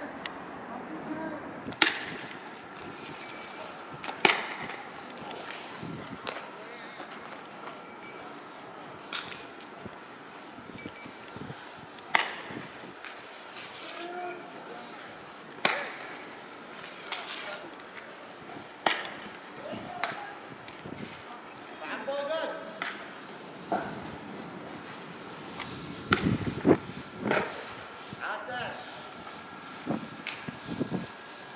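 Street clash with tear gas: a dozen or so sharp bangs and clatters at uneven intervals, several in quick succession near the end, from tear gas launchers and canisters, with voices shouting in between.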